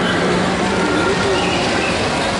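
A model train running around the track of a model railway layout, heard within the steady, loud din of a busy hall with indistinct voices.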